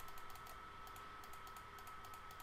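Faint, quick clicks at a computer as the on-screen Roll button of a simulated app is clicked again and again, with a faint steady whine underneath.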